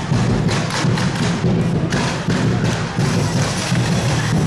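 Plastic barrel drums beaten in a run of repeated thudding hits, over the noise of a marching crowd.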